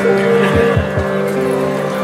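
Harmonium holding a steady chord under a kirtan, with a mridanga drum playing three deep bass strokes about a quarter second apart, each falling in pitch, about half a second in.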